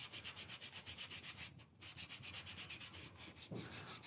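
Faint hand-sanding of a carved wooden grip with 100-grit sandpaper, feathering the surface to a smooth transition. The strokes are quick and even, about nine a second, with a brief pause a little before the middle.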